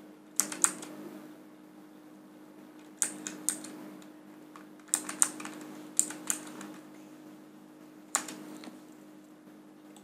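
Computer keyboard keys pressed as a phone number is typed in, in short bursts of two or three keystrokes with pauses between, over a faint steady hum.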